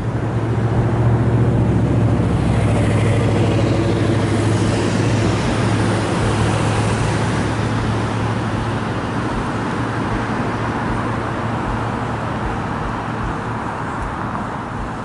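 Road traffic: a motor vehicle's engine hum and road noise close by, loudest a few seconds in and then slowly fading.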